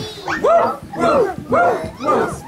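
A group of adults and toddlers calling 'woof, woof, woof' in time with a song, imitating a dog's bark. The calls come three times, about half a second apart, each rising and falling in pitch.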